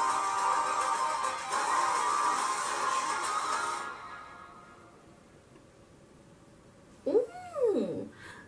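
The closing bars of a K-pop boy-group song play and fade out about halfway through, leaving near quiet. Near the end a short voice-like sound rises and falls in pitch.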